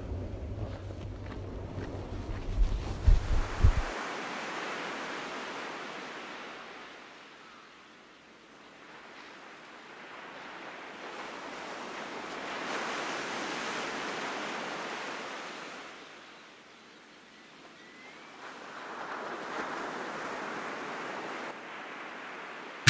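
Sea waves surging in and receding, the rush swelling and fading roughly every seven to eight seconds. In the first few seconds a low rumble with a few sharp thumps sits under it.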